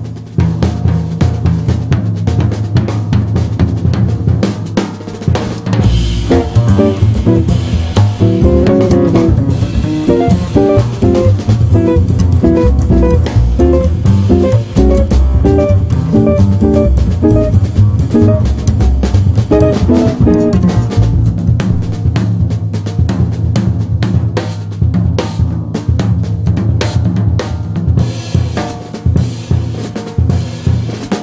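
Jazz trio of guitar, double bass and drum kit playing, with the busy drum kit most prominent. A line of single melody notes runs over the bass from about six seconds in to about twenty-two.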